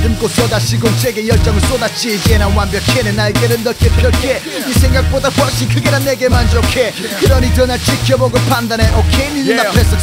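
Korean hip-hop track: rapping over a beat, with deep bass notes repeating about once a second.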